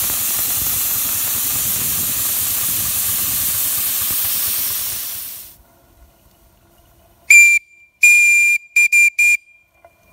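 Steady steam hiss from a 4-inch-scale Burrell traction engine, fading out about five seconds in. After a pause its steam whistle sounds five toots on one high note: a short one, a longer one, then three quick ones.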